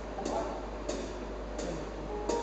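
Soft, evenly spaced ticks keeping a slow beat, about one every 0.7 seconds, three in all, the first with a faint note under it, as a song is about to begin.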